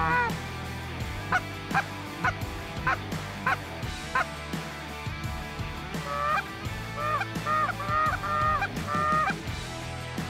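Canada geese honking: single honks about every half second, then a faster run of honks from about six to nine and a half seconds.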